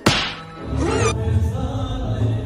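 An edited-in whip-crack sound effect: one sharp crack right at the start that dies away over about half a second, followed by a short wavering tone, before music comes back in.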